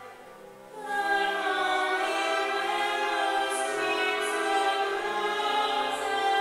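A woman singing classical music in an operatic style in a reverberant church, a new phrase coming in about a second in after a brief lull.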